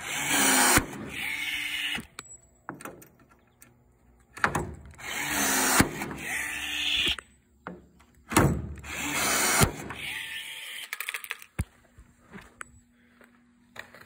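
Milwaukee battery-powered rivet tool setting blind rivets, three times: each time its motor runs for a second or two, and a sharp snap partway through is the rivet's mandrel breaking off.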